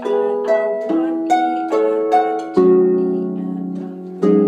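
Concert pedal harp played slowly in slow practice: single plucked notes about every half second, then a fuller, louder chord about two and a half seconds in that rings and fades.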